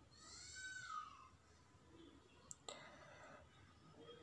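Near silence: room tone with a faint high call that rises and falls in the first second, then a sharp click and a short clatter about two and a half seconds in.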